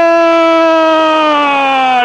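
A radio football commentator's long, drawn-out goal cry, one held note that sinks slowly in pitch, called on a headed goal.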